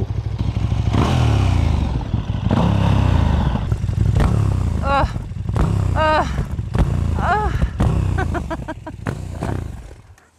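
KTM 1290 Super Duke's V-twin engine idling in neutral, with a few knocks and scrapes as the rider gets off the bike. The engine falls silent just before the end.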